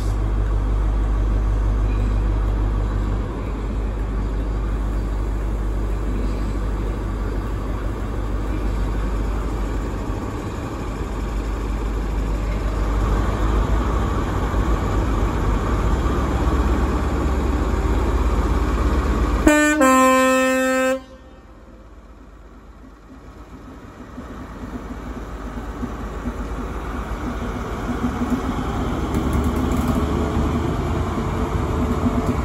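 Class 43 HST power car's diesel engine running at standstill, then a short two-note horn, high then low, about twenty seconds in. After the horn the engine sound builds as the train starts to pull away.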